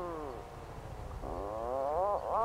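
An Atlantic puffin's low, drawn-out moaning call: one note sliding downward, then after a short gap another sliding upward.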